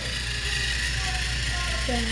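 Battery-powered TrackMaster toy train motors running steadily, a continuous whirring hum as the engines travel along plastic track.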